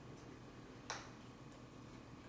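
Quiet room tone with a single light click about a second in.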